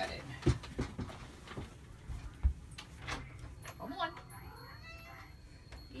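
A pet cat meowing to be let in. Several sharp knocks and clicks fall in the first three seconds.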